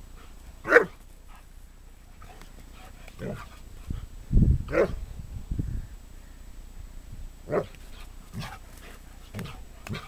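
Pharaoh Hound barking in play, about five short sharp barks spread out, the loudest about a second in.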